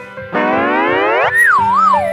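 Cartoon comedy sound effect: a pitch sweeps up for about a second, then wobbles back down in slow waves, over light background music.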